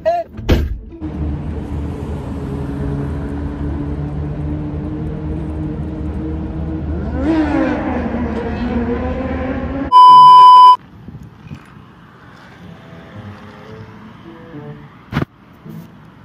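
A car door shuts with a thump, then a Mercedes-Benz CLA's engine runs and pulls away, its pitch rising and falling once near the middle. About ten seconds in, a very loud, steady censor bleep lasts under a second.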